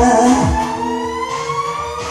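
Karaoke backing track of a J-pop dance song playing without vocals: two low thumps, then a synth tone rising steadily in pitch.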